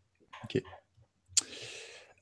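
A sharp mouth click close to the microphone about one and a half seconds in, followed by half a second of breathy hiss from an in-breath before speaking.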